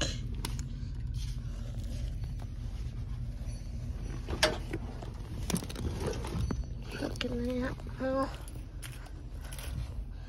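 Stacked rubber-backed doormats being lifted and flipped through by hand, making soft handling noise and a few light clicks over a steady low hum. Two short voiced sounds, a hum or laugh, come about seven and eight seconds in.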